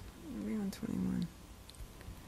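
A person's voice making a soft, drawn-out hesitation sound about a second long.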